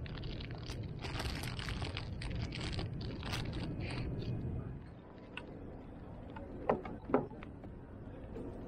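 Handling noise from a plastic-wrapped box being tied onto a bicycle's rear rack with a cord: rustling and small knocks over a low outdoor rumble for about five seconds, then quieter, with two sharp knocks shortly before the end.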